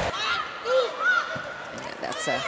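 Court shoes squeaking on the indoor volleyball court during a rally: a few short chirps that rise and fall, over arena crowd noise.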